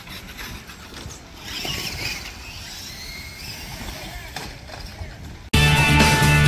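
Outdoor background noise with faint distant voices. About five and a half seconds in it cuts off suddenly and loud rock music with guitars starts.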